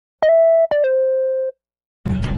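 Short electronic intro jingle: three clean synthesized beep tones stepping down in pitch, the first held about half a second and the next two run together for about three quarters of a second.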